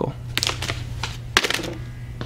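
A sterile peel-pack syringe package being handled and set into a plastic bin on a case cart: crisp rustling with a few sharp clicks, over a steady low hum.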